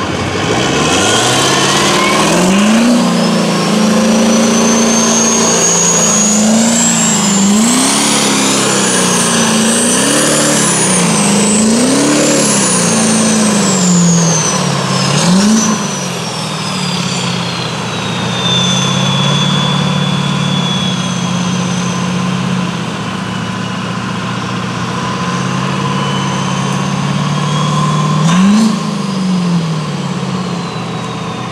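Duramax 6.6 L turbo-diesel V8 in a lifted mud truck revved several times in a row, with a high turbo whistle rising and falling along with the engine. From about halfway it runs steadier and lower, with one more short rev near the end.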